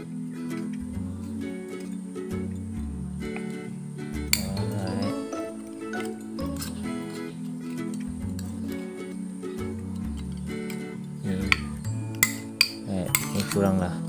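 Background music, with sharp metallic clinks of long-nose pliers working an aluminium soda can: one about four seconds in and several in quick succession near the end.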